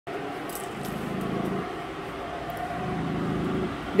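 Jackhammer working next door, heard from inside the house as a muffled, steady mechanical rumble that swells twice.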